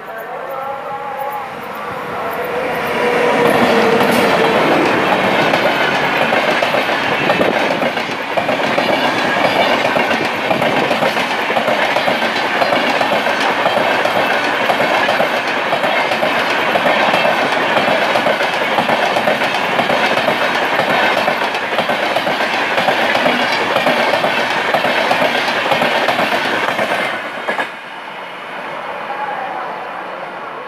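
An express train of LHB coaches passing close at speed: a loud, steady rolling rush with rapid clickety-clack of the wheels over the rail joints. It builds over the first few seconds and cuts off suddenly near the end.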